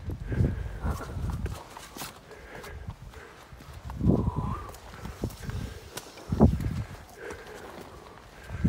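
A hiker's footsteps on bare granite rock: irregular heavy steps, the loudest about four and six and a half seconds in.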